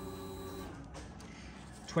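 Motorcycle electric fuel pump priming with a steady hum after the ignition is switched on, stopping about a second in, followed by faint background hiss.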